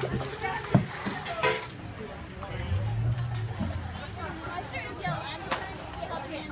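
Plastic tubs and buckets scooping and knocking as floodwater is bailed out by hand in a bucket line, with a few sharp knocks, over the chatter of many people.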